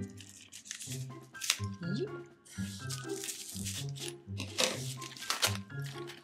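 Thin plastic protective wrap crinkling and tearing as it is stripped off a handbag's handle, in short sharp bursts over background music.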